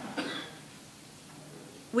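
A single short cough near the start, followed by quiet room tone.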